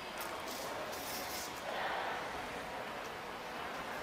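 Steady indoor room noise of a shopping mall, with a few short high hisses in the first second and a half and a slightly louder swell about two seconds in.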